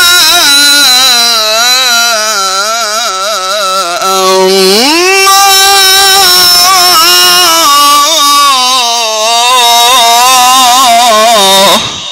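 A male Quran reciter chanting in the melodic mujawwad style into an amplified microphone. He holds long notes with wavering ornaments in two phrases; the second begins with a rising glide about four and a half seconds in and breaks off abruptly near the end.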